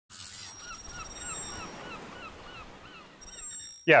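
A bird calling in a quick, even series of short chirps, about three a second, over a steady hiss, growing fainter toward the end.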